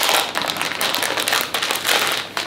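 Clear plastic wrapping crinkling and rustling as it is handled and pulled open by hand: a dense run of quick crackles.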